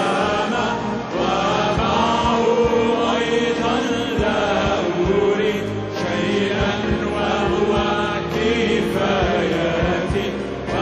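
A worship team of men and women sings an Arabic worship song together on microphones, backed by instruments with a steady beat.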